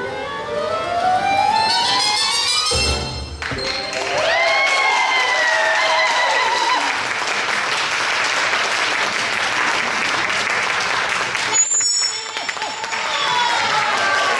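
Stage music finishing with a rising run of notes in the first three seconds, then an audience applauding, with a few pitched voices over the clapping.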